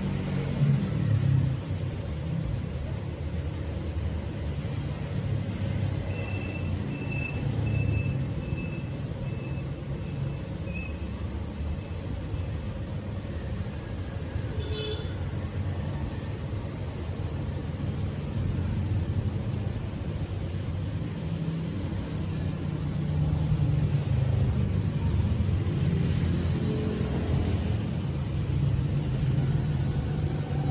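Steady low rumbling background noise, like a running motor or passing traffic, with a short run of faint high beeps about six seconds in and a single click about halfway through.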